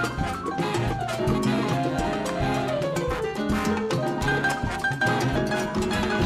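Latin jazz big band playing live: horn sections over congas, drum kit and bass, with dense percussion and a melodic line falling in pitch over the first three seconds.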